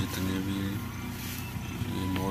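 Tractor diesel engine running steadily under load as it pulls a seed drill, a low, even engine hum.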